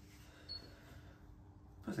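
Faint sound of a knife slicing steaks from a joint of beef on a wooden butcher's block, with one short high squeak about half a second in.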